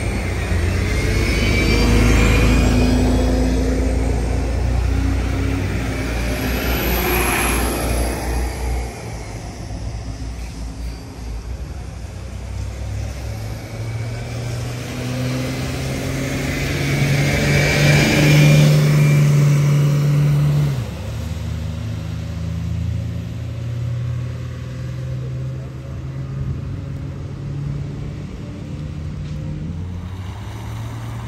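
Buses pulling away one after another, their engines running up as they accelerate, with a whine that rises and falls as each one passes. The second, a vintage transit bus, is the louder, and its engine note drops off suddenly about two-thirds of the way through.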